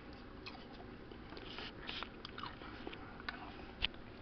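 A person chewing a mouthful of French fries close to the microphone, faint and irregular, with a sharp click near the end.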